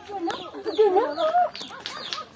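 Chickens clucking, loudest about a second in, with short high chirps repeating about three times a second.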